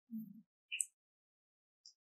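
Near silence, broken by a brief low hum near the start and a faint click just before a second in.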